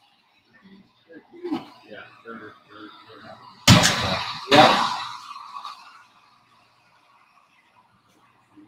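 Faint talk of several people in a room, broken near the middle by two loud, sudden sounds close to the microphone, less than a second apart, each trailing off over about a second.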